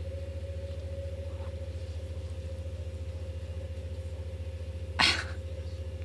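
A low, steady hum with a fast flutter runs under the window. About five seconds in comes one short, breathy burst of laughter.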